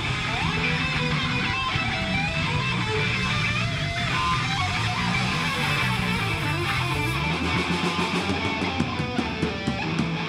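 Live band playing without vocals: electric guitars, bass and drums. Near the end the deep bass drops away and sharp, evenly spaced drum hits stand out.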